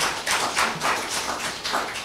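A small audience clapping: a quick, uneven patter of hand claps that fades out near the end.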